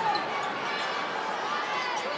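Steady murmur of a basketball arena crowd.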